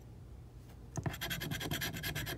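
Scratching the coating off a lottery scratch-off ticket's number spots: a quick run of short, rapid scratching strokes starting about halfway through.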